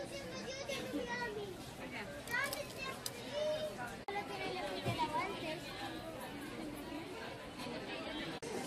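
Busy shop hubbub: indistinct chatter of shoppers with high children's voices calling out, over a steady background din, breaking off briefly about four seconds in.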